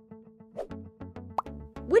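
Light background music of evenly repeating plucked notes over a steady bass line, with a short rising pop sound effect a little past the middle.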